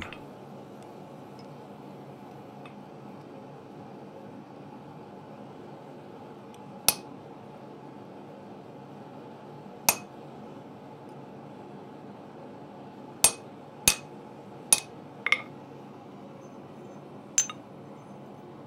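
Hammer blows on a hand punch driving through a hot mild-steel hook end on the anvil: seven sharp metallic strikes, the first two a few seconds apart, then a quicker cluster of four, with one last strike near the end. A steady low hum runs underneath.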